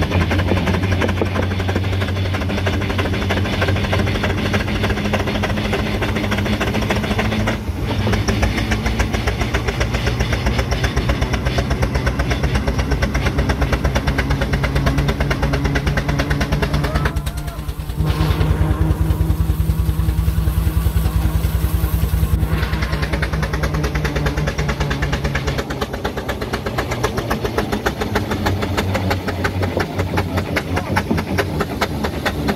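Foden steam wagon under way on the road, heard from on board: a fast, steady beat of exhaust and engine clatter over a low hum. The beat drops out briefly about seventeen seconds in, then picks up again.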